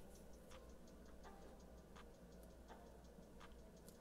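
Near silence with faint, light ticking clicks, about three a second, slightly irregular.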